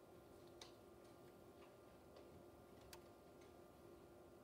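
Near silence: auditorium room tone with a steady faint hum and a few faint, scattered clicks.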